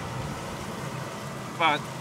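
Combine engine running steadily at idle, a low even hum, with the corn head stopped and its gearbox disengaged.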